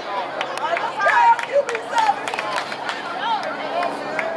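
Several voices calling out and talking over one another on a football sideline, with a few short sharp clicks among them.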